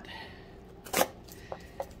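A cardboard shipping box being picked up and handled: one sharp knock about a second in, then two lighter ticks.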